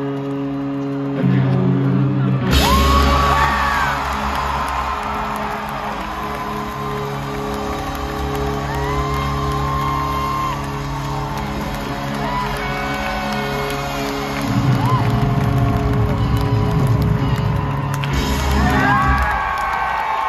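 Live amplified rock band playing in a stadium: held electric guitar chords, bass and drums, recorded from among the crowd, with fans whooping over the music. The sound swells sharply about two and a half seconds in as the full band comes in.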